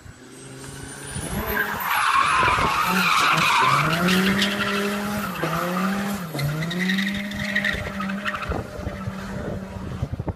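A car's engine revving hard and its tyres screeching as it drifts sideways through a hairpin, the tyres spinning hard enough to smoke. It grows louder over the first couple of seconds as the car approaches, then the engine is held at high revs with two brief dips near the middle.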